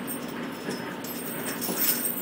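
Young animals scuffling in loose straw, with a faint whimpering cry near the end.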